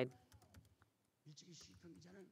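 Faint speech in the background during a pause in the louder voice, with a few light clicks in the first second.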